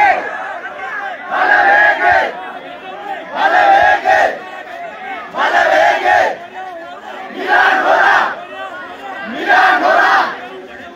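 A crowd of protesters chanting a short slogan in unison, shouted together about every two seconds, with a lower murmur of voices between the shouts.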